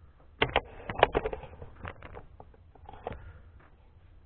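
A quick run of clicks and knocks about half a second in, then a few scattered ones: small plastic and metal items, such as a spray gun and cups, being handled on a workbench.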